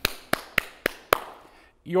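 One man clapping his hands, five claps at about three to four a second, stopping a little after a second in.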